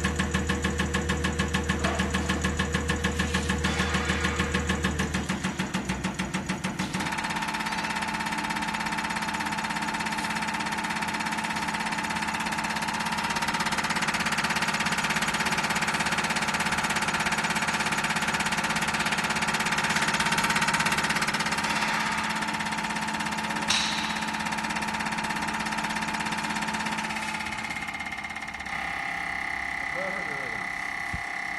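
CR318 common rail injector test bench running a Bosch diesel injector test: the injector clicks rapidly and evenly as it is pulsed, over the hum of the bench's drive and pump. About seven seconds in the clicking stops and a steady whine with hiss carries on, with one sharp click near the end.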